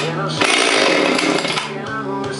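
Husqvarna 257 two-stroke chainsaw revved in a short burst of throttle, about a second long starting about half a second in, over background music.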